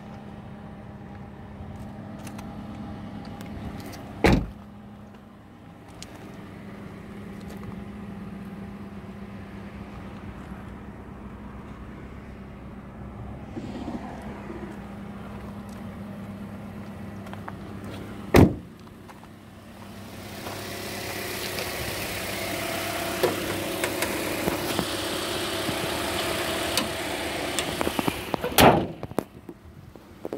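Doors of a 2019 Toyota Corolla being shut: three loud thuds, about four seconds in, at about eighteen seconds and near the end, over a steady low hum. In the last third comes a louder rough crunching noise, like footsteps on gravel.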